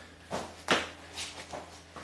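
Pair of 50-lb hex dumbbells picked up off a concrete floor and brought up to the shoulders: two sharp knocks in the first second, the second the louder, then a few lighter knocks and shuffles.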